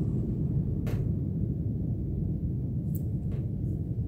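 Steady low rumble, with a faint click about a second in.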